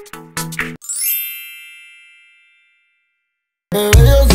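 A music snippet cuts off under a second in, and a bright bell-like ding rings out and fades over about two seconds. After a moment of silence, a loud bass-heavy song cuts in abruptly near the end.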